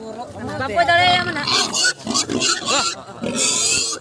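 A large pig squealing while several people hold it down, two loud cries, the second one longer, with men's voices around it.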